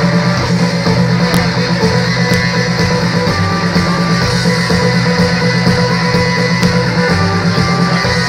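Live rock band playing an instrumental passage led by guitar, loud and steady through the concert PA, heard from the crowd.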